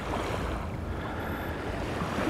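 Wind on the microphone and small waves washing onto a sandy lake beach: a steady rushing noise.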